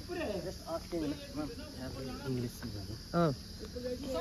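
Steady, high-pitched chirring of insects, with faint voices talking in the background and a man saying "oh" near the end.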